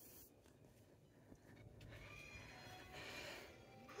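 Near silence: room tone, with a faint, indistinct pitched sound near the middle.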